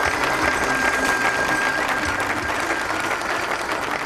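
Large hall audience applauding steadily, with a single high musical note held underneath that fades out about three seconds in.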